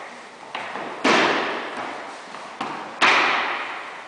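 Thuds of aikido partners being thrown and taking breakfalls onto foam mats, two loud impacts about two seconds apart, each just after a lighter one. Each impact rings on briefly in a large, echoing gym hall.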